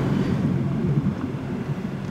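Steady cabin noise of a car driving slowly along a street: a low engine hum under road rumble.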